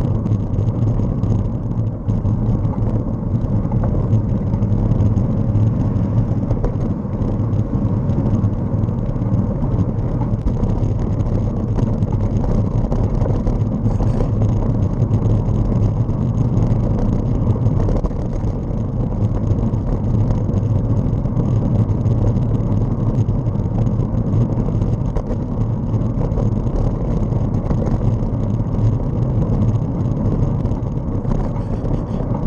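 Steady low rumble of a vehicle travelling along a road, its road and wind noise unchanging throughout.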